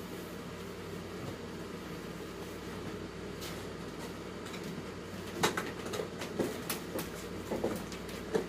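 Knocks, bumps and thumps of a person climbing onto an armchair and up onto a raised bed, a few knocks about halfway in and a cluster in the last few seconds, the loudest near the start of that cluster. A steady low hum runs underneath.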